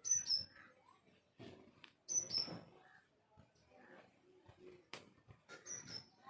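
A small bird chirping: three pairs of short, high, falling chirps, at the start, about two seconds in, and near the end. A single sharp click about five seconds in.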